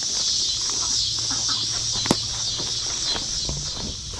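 Backyard chickens clucking faintly over a steady high-pitched hiss, with one sharp click about two seconds in.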